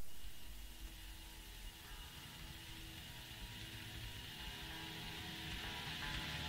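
Faint, slowly swelling start of a hardcore/thrash metal track: a low hum and hiss with a few quiet held tones, growing gradually louder.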